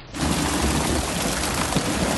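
Dense, steady splashing and spattering of water as a net full of fish is hauled over the side of a boat by hand, with a low rumble underneath; it cuts in abruptly at the start.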